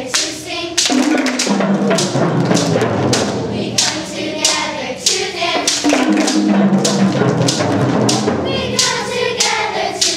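A children's choir singing a song together, with hand claps marking a steady beat.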